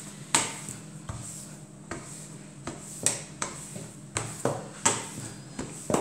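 Rolling pin being pushed back and forth over a sheet of croissant dough on a table, giving a series of sharp, irregularly spaced clacks and knocks, about one or two a second.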